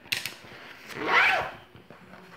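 Zipper on a fabric makeup bag being pulled: a short rasp just after the start, then a longer, louder zip about a second in.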